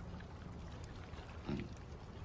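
Faint, steady low background rumble, with a brief low voice sound about one and a half seconds in.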